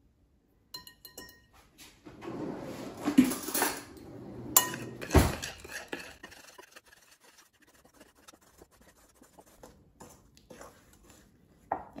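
Metal wire whisk mixing flour into batter in a glass bowl, scraping and clinking against the glass. The clinks are loudest and busiest a few seconds in, then thin out to faint light taps.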